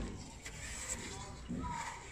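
Plastic drawing instruments, a set square and a ruler, being shifted and laid down on paper on a drawing board, a soft sliding rustle. A voice begins near the end.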